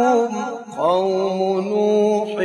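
A male reciter chanting a Quranic verse in a melodic maqam style: ornamented, wavering notes, a brief break just under a second in, then a long held note.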